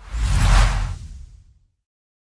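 Whoosh sound effect with a deep low boom for a logo animation. It swells quickly, peaks about half a second in and fades away within about a second and a half.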